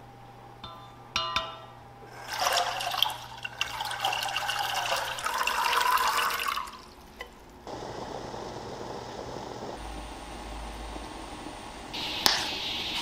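A few short electronic beeps, typical of an induction cooktop's touch controls, then green peas tumble and splash into a stainless steel pot of water for several seconds. From about eight seconds in, the water with the peas in it boils steadily.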